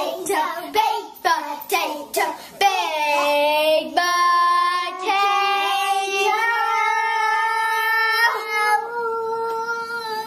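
A child singing a short sing-along tune, unaccompanied: choppy sung phrases at first, then long held notes through the second half.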